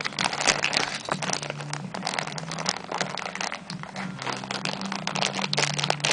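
Clear plastic toy packaging crinkling and crackling as it is handled and opened, in a dense run of quick, irregular crackles.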